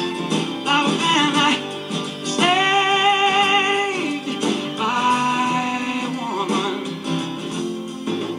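A man singing over acoustic guitar, recorded pop-folk music streamed from a phone and played through the speaker of a vintage Bendix Catalin tabletop radio. There is a long, wavering held note partway through.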